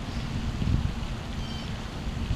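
Wind buffeting the camera's microphone: an uneven low rumble with a faint hiss above it.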